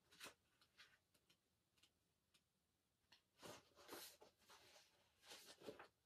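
Near silence broken by faint, brief rustles of paper pages being turned by hand, a few early on and a denser run of them in the second half.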